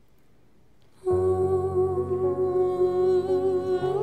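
A choir humming a held chord, coming in about a second in and sustained, with a new chord just after the end.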